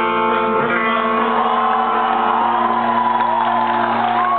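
A live band's electric guitar chord held and ringing out loud through the PA with a steady low drone beneath it, as the song ends. From about a second and a half in, the crowd starts shouting and whooping over it.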